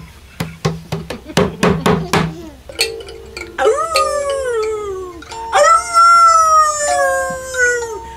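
A person howling like a dog: two long howls that slide down in pitch, the second longer and louder, over held notes from a live accompanying instrument. It opens with a run of quick struck notes.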